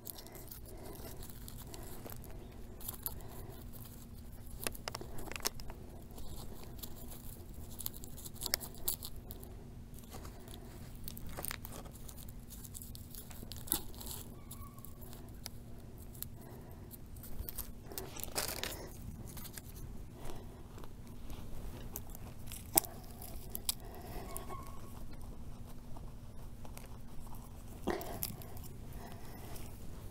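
Soft, scattered crunches and crackles of hands dropping tulip bulbs into a hole of loose, gritty soil and brushing the dirt, over a faint steady hum.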